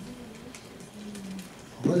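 A man's voice humming softly in two short, steady low notes through a headset microphone, then speech starting near the end.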